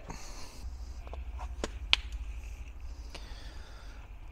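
A tablet being handled and its touchscreen tapped: a few light, separate clicks, the sharpest about two seconds in, over a low steady hum.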